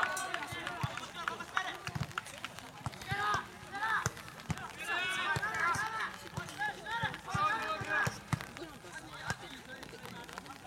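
Players' voices calling out across a football pitch in a string of short calls, busiest in the middle, with scattered faint knocks.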